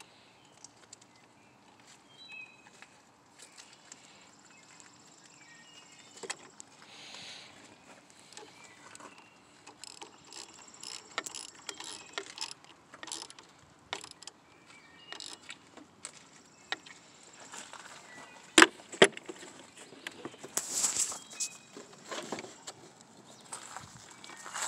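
Ratchet wrench clicking in short runs on a car battery's positive terminal bolt, with scattered metal clicks and clinks of the tool and terminal; two sharp knocks a moment apart about three-quarters of the way through are the loudest sounds.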